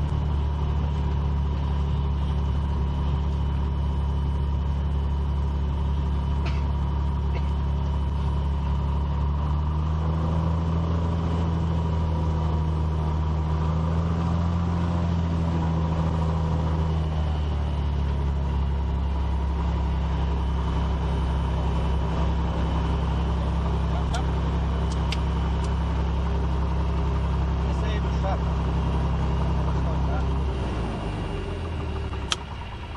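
Piper PA-32 Cherokee Six's six-cylinder Lycoming piston engine and propeller running at low taxi power, heard from inside the cabin. It runs steadily, with the rpm rising slightly about ten seconds in and easing back again a few seconds later as the plane rolls to a stop.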